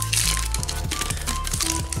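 Foil booster pack wrapper crinkling and crackling as it is torn open by hand, over background music.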